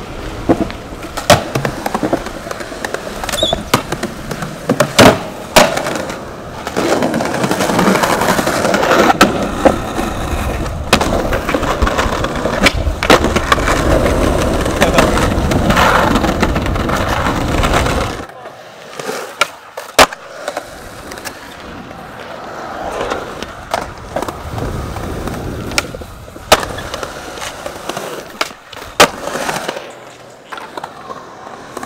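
Skateboard wheels rolling on concrete, with sharp clacks from the board's pops and landings. The rolling is loudest for about ten seconds, then falls quieter while scattered clacks go on.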